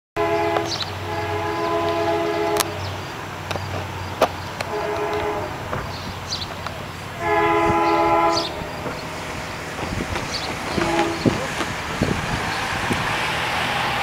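Diesel locomotive air horn on an approaching freight train, sounding a multi-note chord in several blasts: a long one, a short one, another long one and a brief toot. Near the end a car passes close by, its tyre noise rising.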